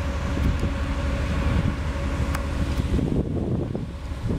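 Gusty wind buffeting the microphone, the noise mostly low in pitch, over a faint steady hum that fades out about three seconds in.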